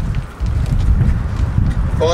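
Wind buffeting an outdoor microphone: an uneven low rumble, with a brief lull about a third of a second in.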